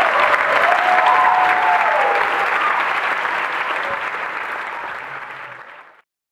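Audience applauding, with a few voices calling out over it in the first two seconds. The applause dies away gradually and then cuts off suddenly.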